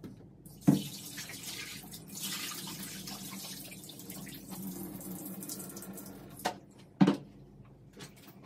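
Water running from a tap, with two sharp knocks, one about a second in and one near the end.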